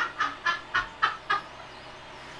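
A voice making a quick run of short clucking sounds, about five a second, that stops about a second and a half in.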